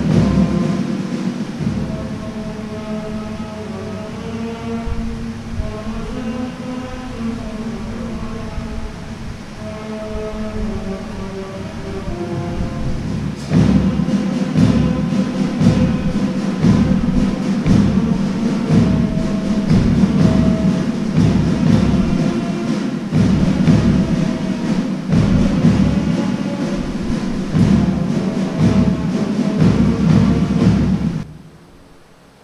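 Band music: a melody over soft drums, switching about thirteen seconds in to louder music with a steady drumbeat.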